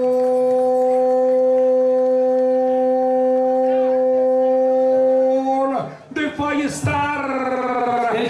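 A man's voice holding one long, steady shout of "gol" for about six seconds, a commentator's call for a scored penalty, followed near the end by livelier, broken voice sounds.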